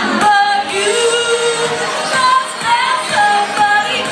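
A woman singing karaoke to a pop backing track.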